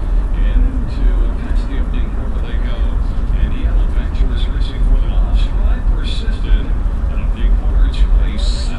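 Steady low rumble of a car's engine and tyres heard from inside the cabin as it drives along the track. An indistinct voice talks over it.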